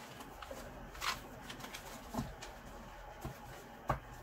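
Tarot cards being gathered up off a cloth table mat and squared into a deck: soft sliding and a few light taps, about a second in, a little after two seconds and just before the end.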